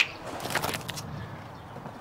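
Low background hiss with a short burst of clicks about half a second in.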